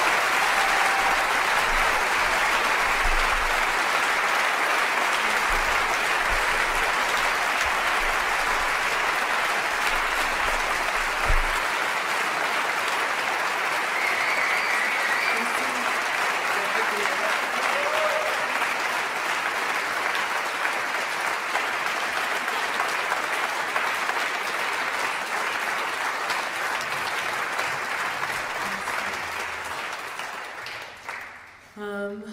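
Concert audience applauding steadily after a song, the clapping slowly dying away near the end.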